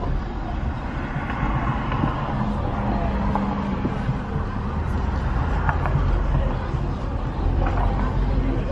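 Steady low rumble of a car driving slowly, heard from inside the cabin, with faint voices in the background.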